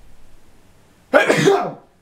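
A young man's single loud, harsh cough about a second in, lasting just over half a second.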